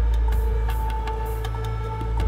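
Tense film-score music: a deep, steady drone under held higher tones, with a faint regular ticking about three times a second.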